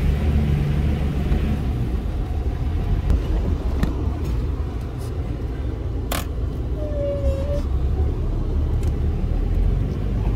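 4x4's engine running at low revs, heard from inside the cab as it crawls up a rocky track in low range with the diffs locked, a steady low rumble. A few sharp knocks and clicks from the vehicle bumping over rocks, the strongest about six seconds in, followed by a brief squeak.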